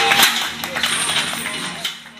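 Noisy gym commotion during a heavy box squat: voices shouting over music, with metallic jingling from the chains hanging on the barbell. It fades near the end.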